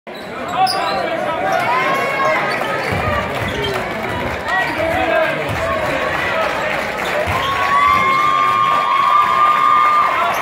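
A basketball being dribbled on a hardwood gym floor, a few low knocks, under a steady spread of crowd voices and shouts in a large gymnasium. About seven seconds in, one long steady high tone comes in and holds to the end.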